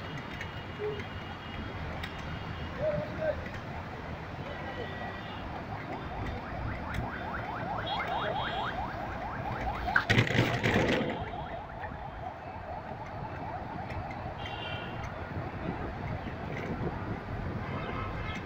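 City street traffic heard from a moving vehicle: engine and road noise run steadily, with a rapid rattle building in the middle and a loud, sharp burst about ten seconds in.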